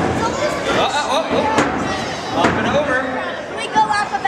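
Hobbyweight combat robots knocking against each other and the plywood arena floor: a few sharp knocks, the loudest near the end, over steady crowd chatter.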